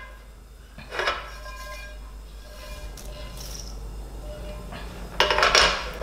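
Metal spoon stirring cinnamon bark pieces in a stainless steel frying pan, with light scraping and a ringing clink about a second in. A louder knock comes near the end.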